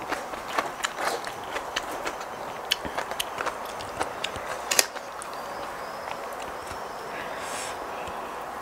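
Light clicks and crackles of alfalfa sprouts being pinched out of a clear plastic tub and sprinkled over a salad, thick for the first five seconds and sparse after, over a steady background hiss.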